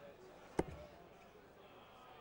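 A dart thudding once into the dartboard about half a second in, a single short knock in a quiet hall with faint murmuring.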